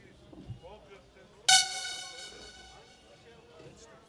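A loud horn-like tone sounds suddenly about one and a half seconds in and fades away over about a second, over faint background chatter.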